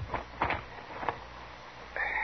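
Radio-drama sound effect of a barber's cloth being draped over a customer: a few short snaps and rustles, the clearest about half a second in, over the old recording's hiss.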